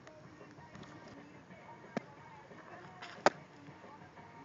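An 11-inch fastpitch softball, thrown at about 41 mph, lands with one sharp smack about three seconds in. A fainter click comes about two seconds in.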